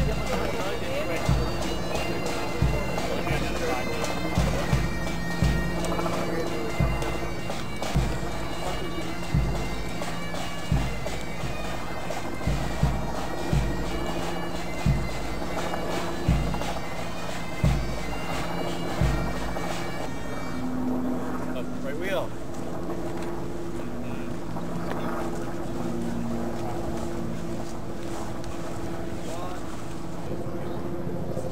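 Bagpipes playing a march over steady drones, with a bass drum beating about once every second and a half. About twenty seconds in, the tune and the drum stop, leaving fainter background sound.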